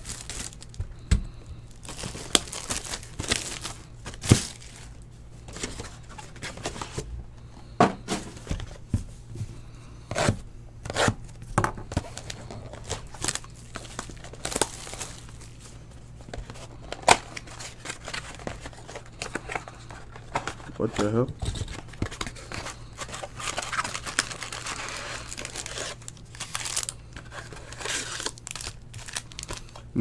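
Plastic wrap and foil card packs crinkling and tearing as a sealed hobby box of trading cards is unwrapped and opened by hand and its packs pulled out, with many short irregular crackles.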